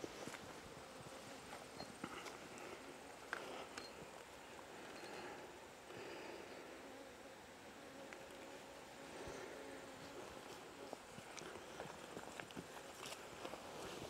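Faint, low hum of honeybees around an open hive box, with a few soft knocks and footsteps.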